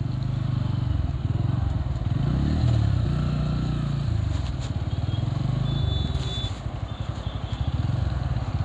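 Bajaj Pulsar P150 motorcycle's single-cylinder engine running while riding, its pitch rising and then easing off a few seconds in.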